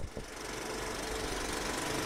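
A machine running steadily with a fast mechanical rattle, slowly getting louder.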